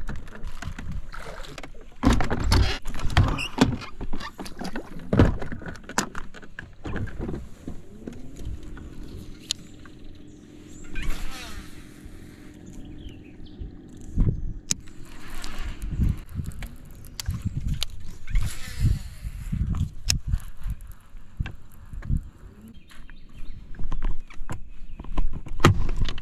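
An electric trolling motor on a bass boat hums steadily for several seconds in the middle. Scattered knocks and clicks from gear on the boat deck run throughout.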